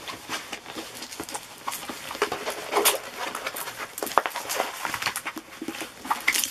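Diamond painting canvas and its paper cover sheet rustling and crackling irregularly as they are rolled up by hand.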